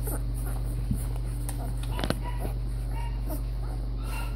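Two-week-old puppies nursing, letting out several short, high squeaks and small whimpers, with a few soft clicks, over a steady low hum.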